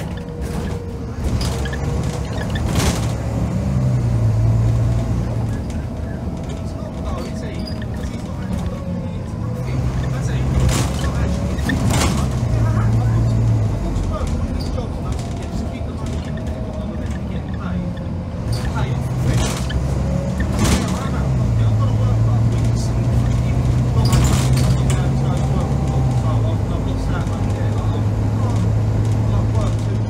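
Volvo B9TL double-decker bus's six-cylinder diesel engine pulling hard, heard from inside the passenger saloon, its note stepping up and down several times as the throttle and gears change. A whine rises and falls in pitch over it, with rattles from the bodywork.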